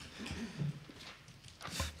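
Faint handling noise at the desk microphones: a few soft knocks and rustles as papers and objects are moved on the desks, with a low thump just before the end.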